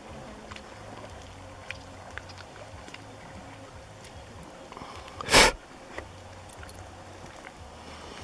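Paddle blades of a small inflatable boat dipping and splashing lightly in calm water, with scattered small clicks. About five seconds in, a loud, brief rush of noise stands out above everything else.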